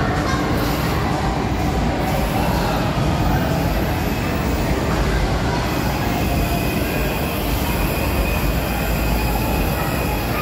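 Loud, steady mechanical rumble of amusement-park ride machinery running in an indoor hall, with no distinct knocks or breaks.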